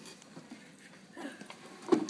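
Faint rustling handling noise, then a single sharp knock near the end, as the phone and hands bump against the glass terrarium and its lid frame.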